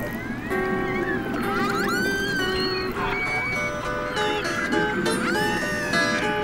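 Orca calls picked up by a hydrophone: rising and falling whistles about a second and a half in and again near the end, heard together with held guitar notes played to the whales.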